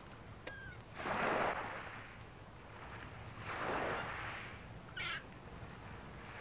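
A gull giving a short thin cry near the start and another brief call about five seconds in, over two slow swells of waves washing ashore.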